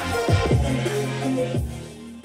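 Electronic music with a heavy bass line, played through an RCF ART active PA speaker under test. Bass notes swoop down in pitch twice, and the music grows quieter near the end.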